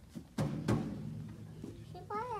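Drum of a display drum kit hit twice by a small child's hands: two sharp hits about a third of a second apart, each ringing briefly.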